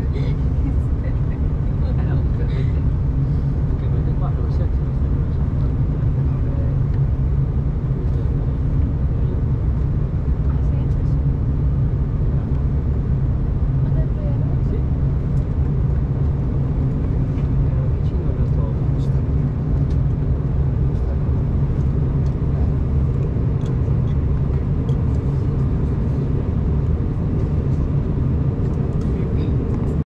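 Steady in-cabin drone of a Bombardier CRJ1000 in the climb after take-off: the rear-mounted turbofan engines and the airflow over the fuselage heard from inside, a constant low rumble.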